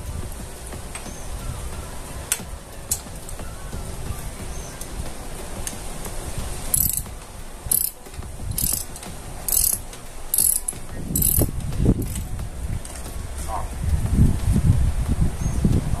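A ratchet wrench with a 10 mm socket ratcheting on a motorcycle's front sprocket bolts as they are loosened. Short runs of quick clicks come about once a second, six times, from about seven seconds in. Low handling knocks near the end.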